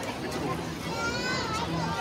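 Voices of a crowd talking on a busy walkway, with a high, wavering voice, such as a child's, about a second in.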